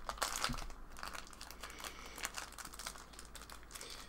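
Thin clear plastic wrapping crinkling as it is pulled and peeled off a stack of trading cards, in many quick, irregular crackles.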